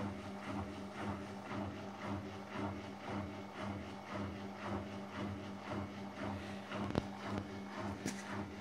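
Siemens WM16S790 front-loading washing machine starting a spin-and-drain cycle: the drain pump hums steadily while the drum turns, giving a regular soft pulsing swish, with a single click about seven seconds in.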